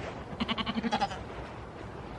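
A goat bleating once, a short wavering call about half a second long, starting about half a second in.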